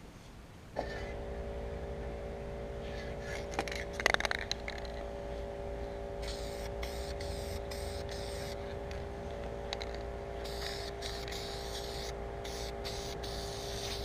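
Aerosol can of satin spray lacquer hissing in a run of short sprays in the second half, over a steady hum. A short clatter comes about four seconds in.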